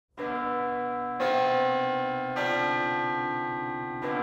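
Church bells struck three times, a little over a second apart, each at a different pitch, the notes ringing on and overlapping as they slowly fade.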